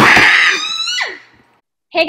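A woman's loud, high shriek that falls away in pitch and stops a little over a second in.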